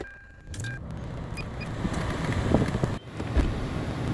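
Car engine started with the key: a short electronic chime, then the engine catches about half a second in and settles into a steady idle, with a thump near the end.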